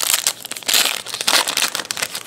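Foil wrapper of a 2011 Playoff Contenders football card pack crinkling as it is torn open by hand, a run of rapid crackles with louder bursts about two-thirds of a second and a second and a half in.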